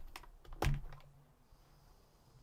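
Hard plastic Glock pistol case being handled: a few short sharp clicks and knocks of its plastic shell and latches, the loudest about two-thirds of a second in, then quiet.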